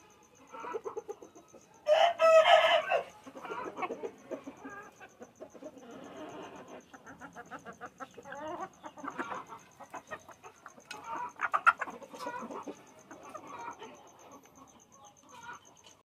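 Australorp and other hens clucking as they feed, with short clicks of beaks pecking at the food throughout. A loud call of about a second comes about two seconds in, and another burst of loud clucks comes near the three-quarter mark.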